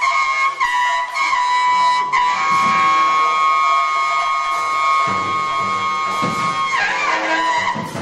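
Free-jazz duo of saxophone and drum kit. The saxophone plays short bending phrases, then holds one long steady high note for about four and a half seconds before bending away near the end. Rolling tom and drum strokes run underneath.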